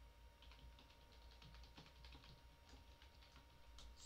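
Faint typing on a computer keyboard: a run of irregular key clicks.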